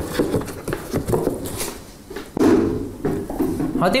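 A cardboard gift box and its wrapping being handled and opened: irregular rustling with a few light knocks, and a spoken word near the end.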